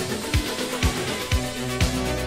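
An 80s-style Italo disco track played from vinyl, with a four-on-the-floor kick drum about twice a second under steady synth tones. A deep bass line comes in about one and a half seconds in.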